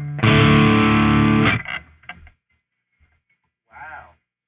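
Humbucker-equipped electric guitar through a Marshall amp head and 4x12 speaker cabinet, heavily distorted. A chord rings for about a second and a half and is cut off short, and a brief, fainter string sound follows near the end.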